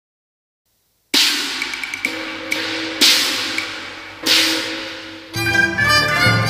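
Cantonese opera percussion opening: after about a second of silence, a series of loud cymbal-and-gong crashes, each ringing and fading, with lighter strokes between them. Near the end, bowed strings come in.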